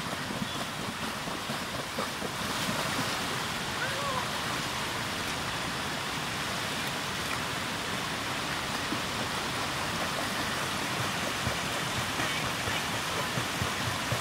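Steady rush of a waterfall and flowing stream, with water splashing as a person kicks and wades in a rocky pool.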